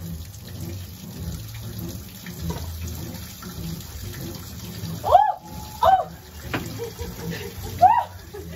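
Water running from a tap, with a few short, loud calls that glide up and down in pitch: two about five and six seconds in and another near the end.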